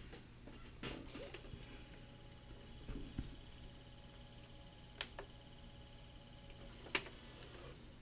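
Sharp VCR's tape-loading mechanism running with the lid off: a faint, steady motor whine, broken by two sharp clicks about five and seven seconds in, as it tries to pull the tape. The tape has snapped off the cassette, so the mechanism catches tape on one side only.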